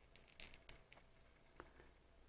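Near silence with a few faint clicks of a plastic action-figure gun being handled against the figure's hand.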